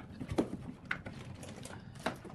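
A few short rustles and knocks of packaging as a hand rummages in a cardboard box and lifts out a boxed item.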